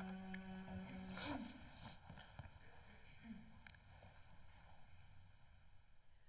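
A single steady sung-range note, sounded to give an a cappella ensemble its starting pitch, ends about a second in. Then comes near-quiet hall tone with a few faint clicks and shuffles as the singers ready themselves.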